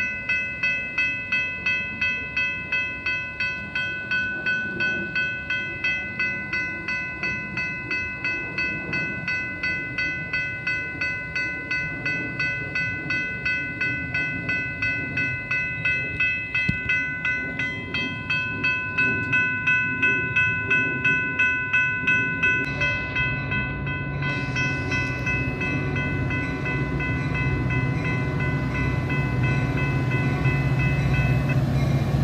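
Railroad grade-crossing warning bells ringing in an even rapid rhythm, about two strokes a second. About three quarters of the way through the strokes blur into a steady ring, and a diesel commuter locomotive's rumble builds as the train approaches the crossing.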